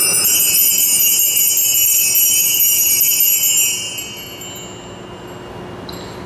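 Altar bells struck once at the elevation of the consecrated host, a bright ringing of several high tones that fades out over about four seconds.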